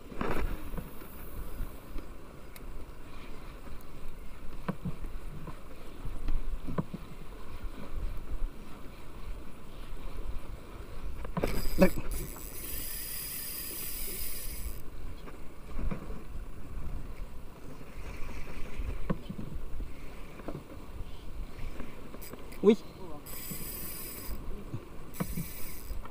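Wind and water noise on the microphone of a small boat at sea: a steady low rumble with a few light knocks. A hiss lasts about three seconds midway, and two shorter ones come near the end.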